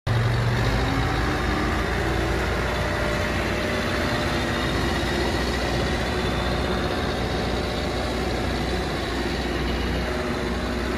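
A 2004 New Holland LB90B backhoe loader's diesel engine runs steadily as the machine drives and turns. It is a little louder in the first second.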